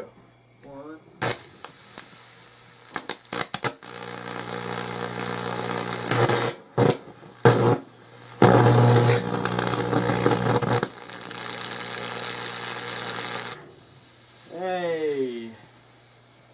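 High-voltage transformer buzzing as 590 V drives current through a water-soaked pencil, with crackling and sharp pops of electrical arcing and burning through the graphite. The crackle builds from about four seconds in, is loudest with several sharp pops in the middle, and cuts off suddenly when the power is switched off. A brief vocal exclamation follows near the end.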